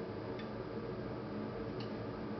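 Steady background hum and hiss, with two faint ticks, one near the start and one near the end.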